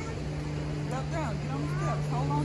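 Voices with pitch that rises and falls, starting about a second in, over a steady low hum.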